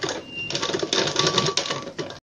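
Sewing machine stitching a seam through cotton fabric, running fast in a quick, even run of stitches that starts about half a second in.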